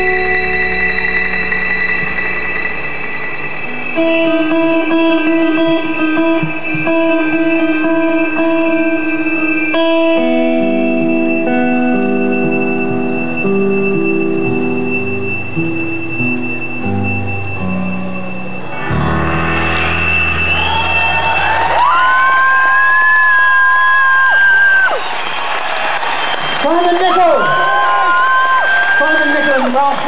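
A folk-rock band's closing passage of held and stepping notes on acoustic guitar and fiddle ends about two-thirds of the way through. An audience then breaks into applause and cheering with loud whistles.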